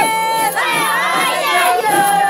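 Several high voices singing together, with long held notes that slide up and down and overlap one another.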